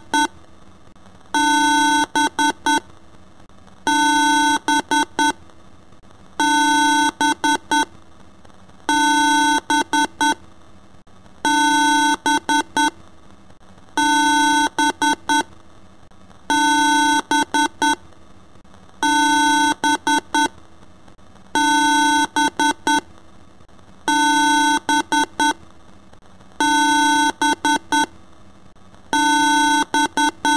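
Electronic beeping in a repeating pattern: a long tone, then three or four short beeps, with the group coming back about every two and a half seconds.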